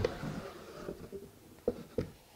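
Cardboard boot box being opened by hand: faint scraping and rubbing of the cardboard lid and flaps, with two soft knocks near the end.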